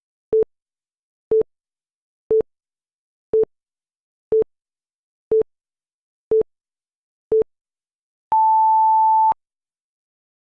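Countdown timer beeping: eight short low beeps one second apart, then one longer, higher beep lasting about a second that marks the count reaching zero.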